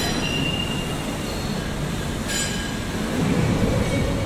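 Angle roll forming machine running: chain-driven roller stations and gearbox motors turning as metal strip passes through. A steady mechanical rumble with thin high squealing tones, and a brief brighter squeal a little over two seconds in.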